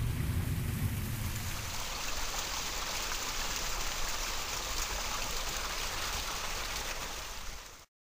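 Small rock waterfall spilling into a koi pond: a steady rush of splashing water that cuts off abruptly near the end.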